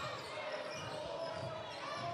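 Basketball dribbled on a hardwood court, a few soft, evenly spaced bounces, over the steady background noise of an arena crowd.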